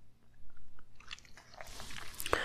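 Paper pages of a book being handled: faint small crackles, then a brief soft rustle near the end.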